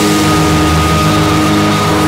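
Live indie rock band in a sustained, droning passage without drums: held guitar and bass notes under a long high tone, with a low note pulsing about five times a second.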